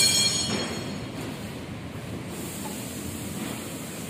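Tyre-shop workshop noise: a brief, loud, high-pitched mechanical whine at the very start that fades out within about a second, followed by a steady low rumble and hiss.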